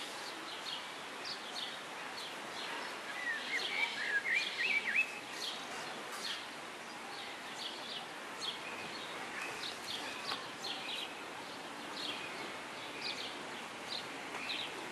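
Small birds chirping over steady outdoor background noise, with a quick run of warbling chirps about three to five seconds in as the loudest part.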